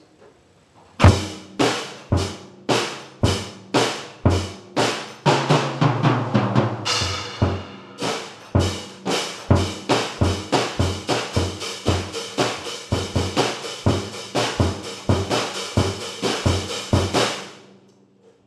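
A CB Drums kit played as a simple repeating beat, starting about a second in. The strikes come evenly at first, get busier in the middle, then settle into a steady faster beat of about four hits a second that stops shortly before the end.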